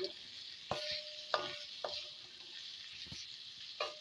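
Fish and raw mango pickle frying in mustard oil in a wok over a low flame: a steady sizzle, with a spatula scraping and knocking against the pan about five times as the mixture is stirred, the pan ringing briefly after two of the strokes.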